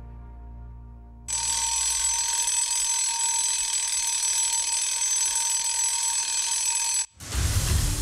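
An alarm clock's bell ringing loudly and without a break, starting about a second in after soft film music and cutting off abruptly about seven seconds in.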